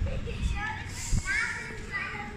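Children's voices calling out while playing, high-pitched and faint, rising in pitch in the second half, over a few low thuds.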